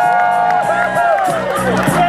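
Crowd cheering for a racing dachshund, with drawn-out whoops from several voices over clapping.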